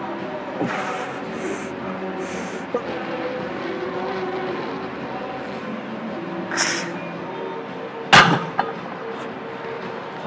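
A loaded 75 kg barbell on a bench press, with a few short hissing breaths as it is pressed, then one loud metal clank about eight seconds in as the bar is set back into the bench's rack uprights. Background music plays throughout.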